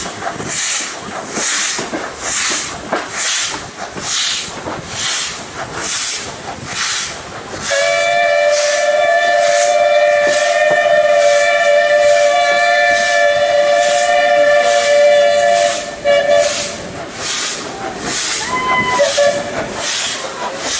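WP-class steam locomotive WP 7200 working, its exhaust chuffing in an even rhythm. About eight seconds in it sounds a long two-note whistle, held for about eight seconds, and then the chuffing carries on.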